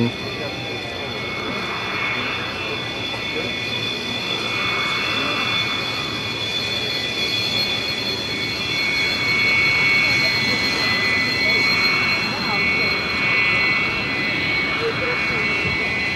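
Beriev Be-200's two D-436TP turbofan engines whining as the amphibian rolls along the runway after landing: steady high tones over a rushing noise that slowly grows louder, peaking about ten seconds in.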